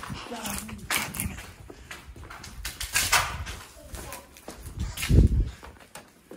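Hurried footsteps scuffing and crunching over a floor strewn with paper and plaster debris, with a heavy low thump about five seconds in.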